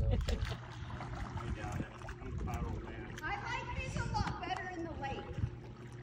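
Indistinct, distant voices, a high voice most plain from about three seconds in, over a low steady hum and low rumble.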